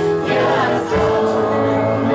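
Gospel worship song: choir-like singing over sustained keyboard chords.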